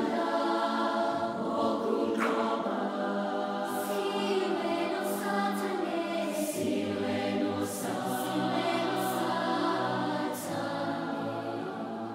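Background music of a choir singing held chords in several voices, with soft sung consonants, easing slightly near the end.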